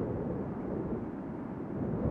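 A low, steady rumble from the sound design of an animated logo intro, with no clear pitch or rhythm.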